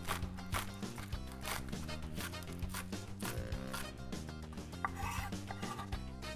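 Kitchen knife chopping spring onions on a wooden cutting board: a run of quick, sharp strikes on the board, with background music underneath.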